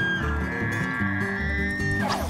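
Bull elk bugling: one long high whistle that climbs slightly in pitch, over background music with a steady beat.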